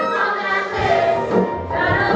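Musical-theatre song performed live: a woman singing lead with a chorus of voices and a pit band behind her.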